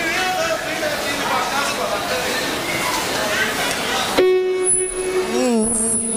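Crowd chatter in a large hall. About four seconds in, live music starts abruptly with a long held note, which then bends up and down into a wavering melody.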